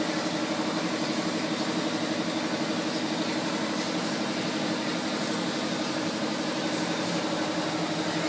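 A four-wheel-drive's engine idling, a steady even drone.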